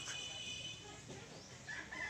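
A rooster crowing: one long held call that begins near the end.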